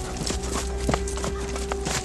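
Several horses' hooves clopping irregularly as mounted riders come up at a walk, over a held note of film score.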